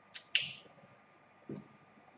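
Whiteboard marker being capped: a faint click followed by a sharper snap of the plastic cap about a third of a second in. A brief soft low thump follows about a second later.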